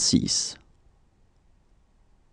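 A voice speaking the French number "soixante-six", ending about half a second in, followed by faint room tone.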